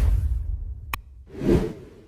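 Whoosh sound effects with a mouse-click effect, as for an animated like-and-bell graphic: a deep swoosh fading away at first, a single sharp click about a second in, then a second swoosh that swells and dies away.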